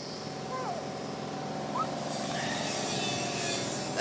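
A steady mechanical hum, with a few short faint rising chirps and faint distant voices.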